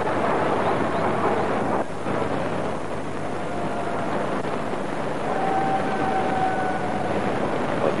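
Steady rushing background noise of a cricket ground picked up by the broadcast's field microphones, with a faint held tone from about five to seven seconds in.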